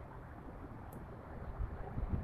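Faint, steady low background rumble, with a single faint tick about a second in.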